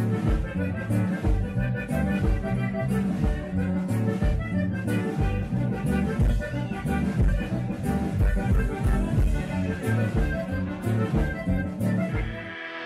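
Live norteño-style band music: electric bass and guitar with accordion, an instrumental passage without singing over a steady, regular beat.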